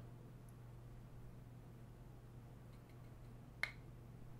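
Near silence: faint room tone with a low steady hum, broken by one sharp click near the end.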